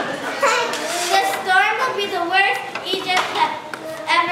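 Children's voices speaking, high-pitched, several short phrases one after another.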